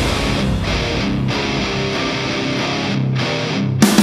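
Background rock music: a guitar-led passage with little bass. The full band comes back in suddenly near the end.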